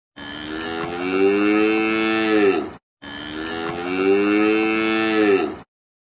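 Two long bovine moos, the same call heard twice, each about two and a half seconds long and falling in pitch at its end.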